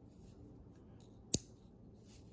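One short, sharp click from a bolt-action pen, its slider snapping the writing tip into place, a little over a second in, against faint room hiss.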